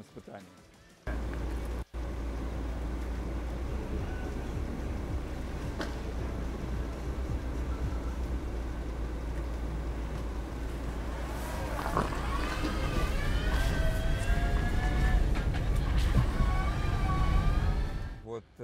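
Outdoor rumble of wind and tyres rolling on a dirt road as an electric tricycle slowly tows a loaded car. In the last several seconds a wavering whine with several pitches rises and falls over it.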